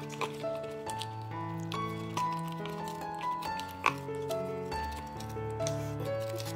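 Background music, a gentle tune of held notes over a bass line. A few short crackles from the cardboard box being torn open along its perforated line, the sharpest just before four seconds in.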